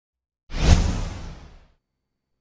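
A single whoosh sound effect: it comes in suddenly about half a second in with a deep low end and fades away over about a second.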